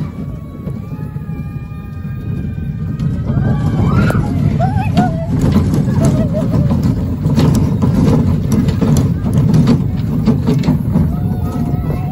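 Small steel roller coaster car rattling and clattering along its track, with a heavy rumble of wind on the microphone that grows louder about three seconds in.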